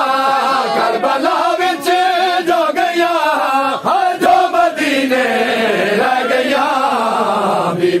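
Crowd of men chanting a Punjabi noha (mourning lament) together in long drawn-out lines, the pitch sliding down toward the end. Sharp slaps of hands beating on chests (matam) cut through the chant now and then.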